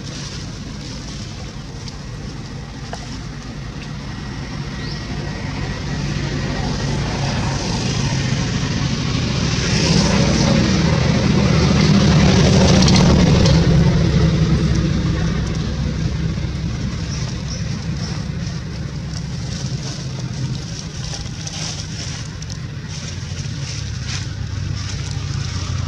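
A road vehicle passing by, its engine and tyre noise swelling slowly to a peak about halfway through and then fading away.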